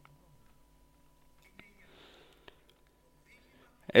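Near silence with a faint steady tone, a soft breath about two seconds in and a couple of light clicks, then a man's speech starts right at the end.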